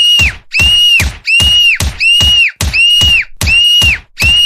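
Looped cartoon fight sound effect for a beating: a burst about every 0.7 s, each opening with a thump and carrying a high held tone that drops away at its end, loud and mechanically regular.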